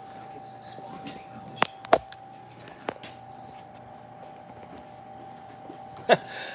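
Handling noise from a camera being picked up and moved: a few sharp knocks and clicks between about one and a half and three seconds in, over a steady faint hum.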